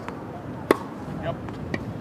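Tennis ball struck by a racket: one sharp crack under a second in, with a fainter pop near the end.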